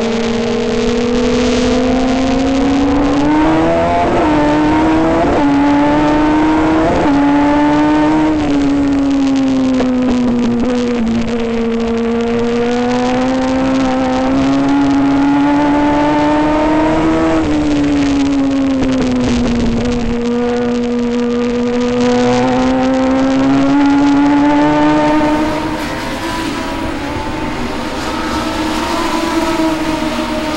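In-car sound of a Legends race car's Yamaha four-cylinder motorcycle engine at racing speed. The engine note climbs and falls in pitch every several seconds as the driver accelerates down the straights and lifts for the turns. It turns quieter about five seconds before the end.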